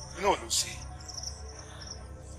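Insects in the bush droning steadily at a high pitch, with a brief vocal sound near the start.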